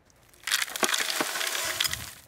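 Loose dry chips poured into a plastic bucket: a rattling hiss of many small clicks that starts about half a second in, after near silence.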